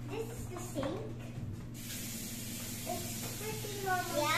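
Bathroom washbasin tap turned on a little under two seconds in, then water running steadily from the mixer tap into the sink with a constant hiss.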